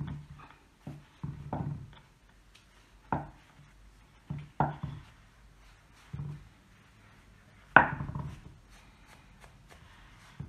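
Irregular handling knocks and soft thumps as hands press and smooth fondant over a cake on a glass plate resting on a wooden table, about half a dozen in all, the sharpest about eight seconds in.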